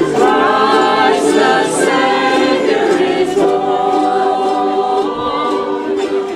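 A ukulele band singing in chorus, mostly women's voices in held notes, with ukuleles strummed underneath.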